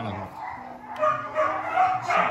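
A frightened, chilled young dog whining in high, drawn-out cries that start about a second in.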